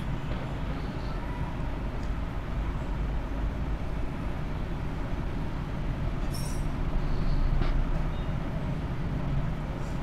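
Steady low rumble of background noise under the pause in speech, swelling slightly near the end. About six seconds in there is a brief faint scrape as a spoon stirs spiced minced-meat filling in a steel bowl.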